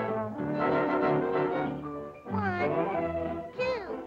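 Cartoon orchestra score with brass. Held chords give way about halfway through to bending, sliding brass notes, with a quick downward slide near the end.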